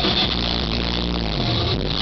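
Live rock band playing electric guitars, bass and drum kit at full volume, an instrumental passage without vocals.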